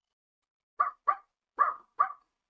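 Small dog barking in short, high yaps, four in quick succession.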